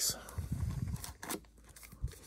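Foil trading-card pack wrapper crinkling in short rustles as it is pulled from the hobby box and handled.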